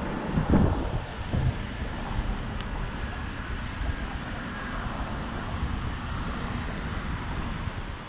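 Street ambience with a car driving slowly past close by in the first couple of seconds, over a steady low rumble of traffic and wind buffeting the microphone.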